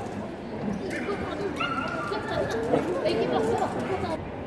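Indistinct chatter of several people's voices in a large sports hall.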